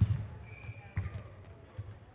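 Badminton rally: racket strikes on the shuttlecock and players' footfalls thudding on the court, a loud one at the start and another about a second in, with a short high squeak between them.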